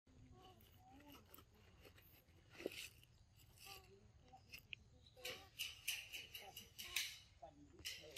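Faint, indistinct voices with crackling rustles and clicks, the crackling growing busier and louder from about five seconds in.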